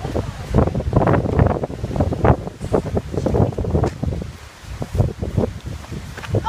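Wind buffeting the camera's microphone in irregular gusts, a loud uneven rumble that comes and goes.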